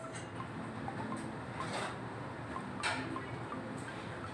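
Steady background noise with a few short, soft taps about a second apart as a finger presses the buttons of a digital temperature controller.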